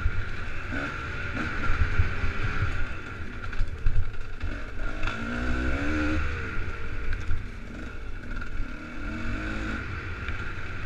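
A 250 cc enduro dirt bike engine revving up and down as it is ridden over rough singletrack, with repeated low thumps and rumble from the bumps and wind on the helmet-camera microphone. The engine pitch rises and falls twice, about five seconds in and again near the end.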